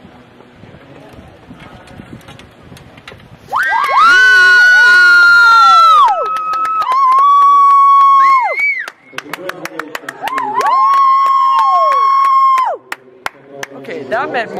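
Several people close by give long, very loud, high-pitched screams of cheering, three screams of about two seconds each, with hand claps through the second half. It greets the horse clearing the last fence of the round.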